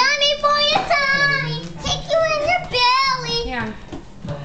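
A young child's high voice singing several long, wordless notes that waver in pitch, with short breaks between them.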